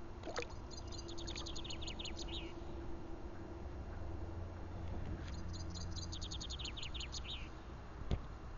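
A songbird singing two phrases, each a rapid series of high notes that drops in pitch toward the end, one near the start and one about five seconds in, over a low rumble.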